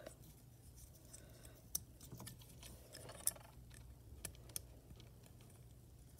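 Faint handling of small plastic Lego pieces: a few sparse, light clicks as a minifigure's accessories and base are fitted, the sharpest about three seconds in.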